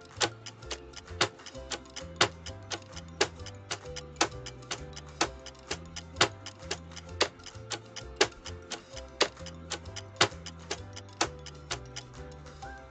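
Clock-style ticking of a countdown timer, a sharp louder tick about once a second with lighter ticks between, over soft looping background music with a steady bass line.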